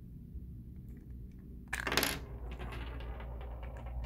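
A AA battery pried out of a TV remote's battery compartment pops free and clatters onto a wooden desk about two seconds in, rattling briefly after the drop; faint plastic clicks come before it.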